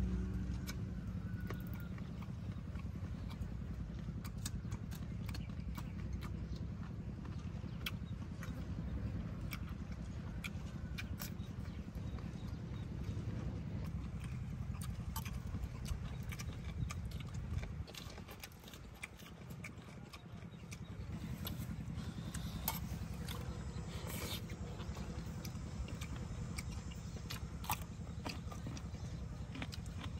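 Eating sounds: chewing with scattered crisp clicks and crunches, like raw vegetables and meat being bitten and chewed, over a low steady rumble that dips for a few seconds about two-thirds of the way through.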